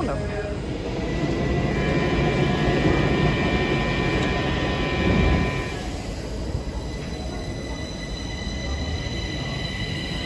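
Stockholm metro C20 train at an underground platform: a loud, steady rumble with a few thin high tones, dropping off somewhat about six seconds in.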